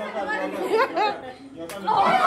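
Several people's voices chattering over one another in a room.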